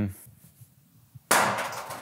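A faint click, then about a second and a half in a single sudden loud crash of noise that dies away over about half a second.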